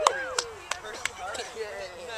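Distant voices calling out, with a quick run of four or five sharp clicks in the first second.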